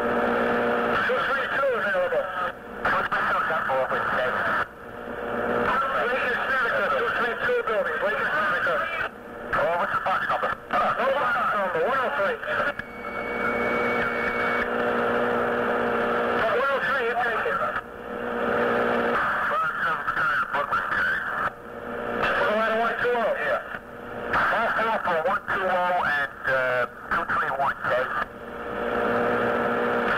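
FDNY two-way radio traffic: tinny, narrow-band voices in back-to-back transmissions, each cut off abruptly between messages. A short high steady tone sounds about 13 seconds in.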